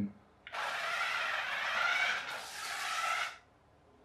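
Battery-powered toy radio-controlled car driving at full speed across a wooden floor, its small electric motor and gears whining for about three seconds, with a brief dip in the middle.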